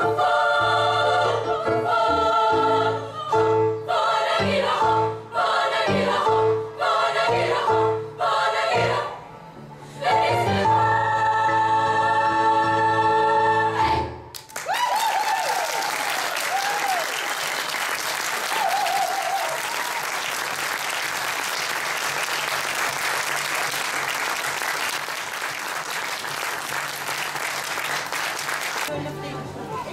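Girls' choir singing in harmony, ending on a long held final chord that cuts off about halfway through. Audience applause follows and runs on steadily.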